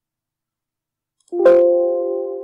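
Silence, then about 1.3 s in a single sampled piano sound from the notation software's playback starts sharply and rings on, slowly fading.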